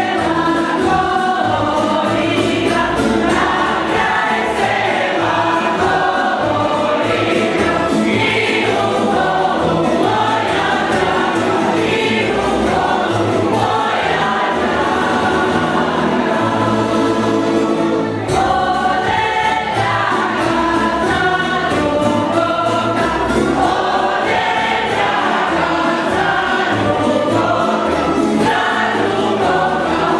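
Folk ensemble singing together as a choir of men's and women's voices, accompanied by a plucked string band with a double bass, in a traditional Croatian folk dance song. The singing and playing run on steadily, with a brief dip about eighteen seconds in.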